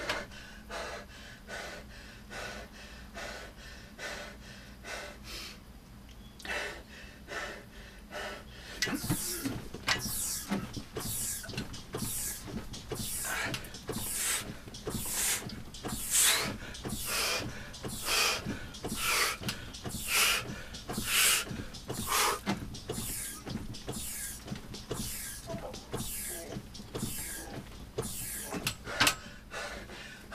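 Hard, rhythmic breathing at about one forceful breath a second, mixed with the working sound of an upright rowing machine's hydraulic shock as a man pushes it all-out with one leg in a Tabata set. The strokes are quieter at first and grow louder and sharper from about a third of the way in.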